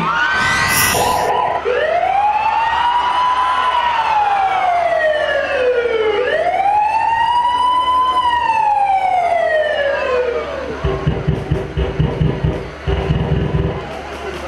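Siren sound effect played over the stage sound system to open a dance act: two slow wails, each rising and then falling over about six seconds. Near the end, deep bass hits of the dance track come in.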